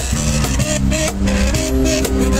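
Street band playing an upbeat song: acoustic guitar strummed over a cajón beat and electric bass, with a held melody line moving from note to note.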